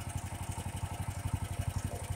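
Bearcat SC-3206 chipper shredder's 18 hp Duramax engine running steadily with a rapid, even pulse, no wood going through it.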